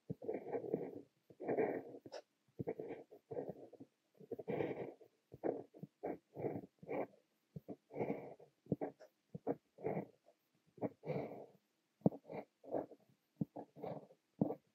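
Montblanc Le Petit Prince fountain pen with a fine nib writing Korean characters on notebook paper: a quick run of short nib-on-paper strokes, one for each stroke of the letters, with brief pauses as the nib lifts between them.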